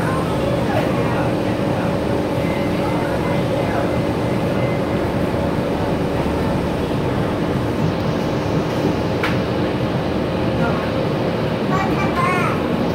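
Cabin noise inside a Gillig BRT clean diesel bus underway: the diesel engine and road noise run steadily with a constant hum. There is one sharp click about nine seconds in.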